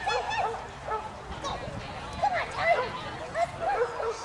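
A dog barking in quick runs of short, high barks, several a second, with brief pauses between the runs.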